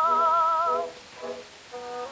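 Mezzo-soprano voice on a 1906 acoustic-era Zonophone disc recording, holding a note with a wide vibrato that stops a little under a second in. Short, quieter instrumental accompaniment notes follow, over a faint steady hiss.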